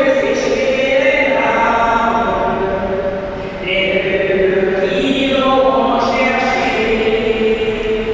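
Voices singing a slow church hymn in long held notes, with a short break between phrases about three and a half seconds in.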